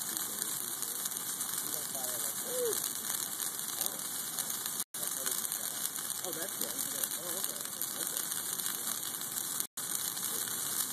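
Bonfire of a Christmas tree and wooden pallets burning, with a dense, steady crackling and hiss from the flames. The sound cuts out briefly twice, about five seconds in and near the end.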